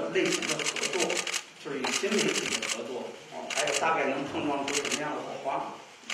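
Camera shutters clicking in several rapid bursts, the longest in the first second and a half, over a person speaking.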